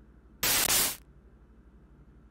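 A single burst of TV static, about half a second long, as the television channel is changed with the remote. A faint low hum lies under the rest.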